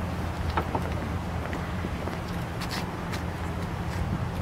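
Steady low rumble of wind on the microphone, with a few faint clicks.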